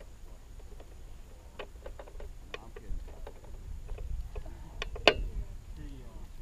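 Scattered light clicks and knocks over a low rumble, the loudest a single sharp click about five seconds in.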